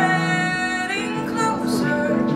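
A woman singing a musical-theatre ballad with piano accompaniment, holding a long note that ends about a second in before the next phrase begins.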